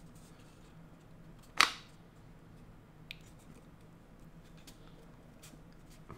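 Wooden puzzle box being handled, its sliding slats pressed and shifted: one sharp wooden click about a second and a half in, a much fainter tick about three seconds in, and otherwise only quiet handling.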